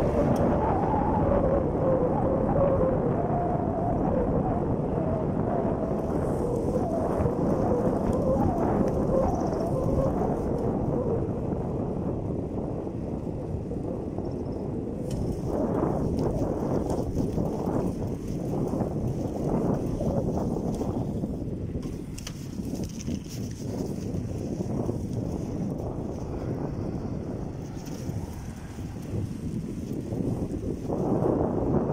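Wind rushing over the microphone of a camera carried on a moving bicycle, with the rumble of the tyres on asphalt. The noise is steady and eases somewhat in the second half.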